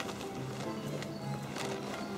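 Music with held notes that change every half second or so, with a few sharp, irregular taps over it.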